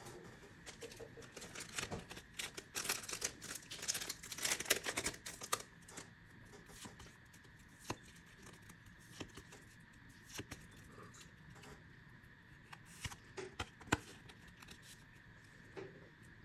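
Pokémon trading cards being handled and slid one at a time off a stack: a dense run of quick clicks and rustles for the first several seconds, then sparser single clicks.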